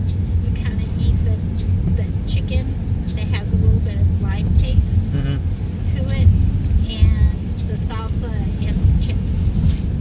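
Steady low rumble of a car driving on the road, heard from inside the cabin, with people talking over it.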